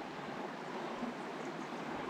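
Steady, faint hiss of a small mountain creek's flowing water.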